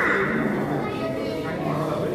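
Voices of adults and children talking over each other in a large hall, with a brief high-pitched voice at the start.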